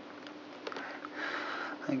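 Quiet close handling: a few faint clicks as the wire mesh of a fat ball feeder is worked loose by hand over a low steady hum, then a sniff shortly before speech.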